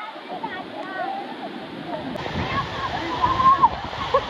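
Waterfall pouring into a pool, a steady rush of water, with splashing and several voices calling out over it.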